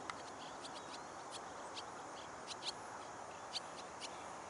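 Faint outdoor background hiss with scattered brief, high-pitched chirps or ticks every second or so; no engine or motor sound stands out.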